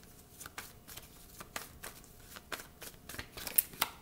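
A tarot deck being shuffled by hand: a quick, irregular run of soft card snaps and flicks, a little louder near the end.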